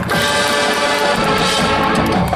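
Marching band brass and percussion playing together: a full-ensemble chord comes in sharply at the start and is held.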